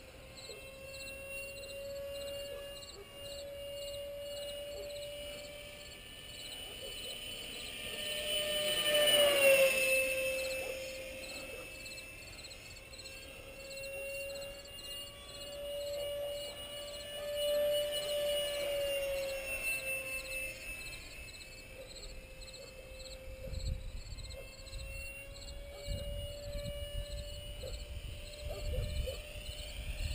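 Electric ducted-fan whine of a 64mm F-18 RC jet flying circuits, its pitch wavering as it turns. It swells and drops sharply in pitch as the jet passes close about nine seconds in, and swells again a few seconds later.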